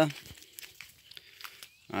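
Faint, irregular rustling and crackling of BRS Capiaçu elephant grass leaves brushing against the phone as it is pushed through the clump.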